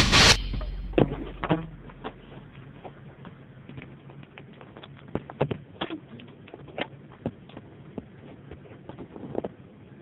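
A music sting cuts off just after the start. Then comes handling noise from a camera being set up inside a car: scattered light clicks and knocks over a low hush.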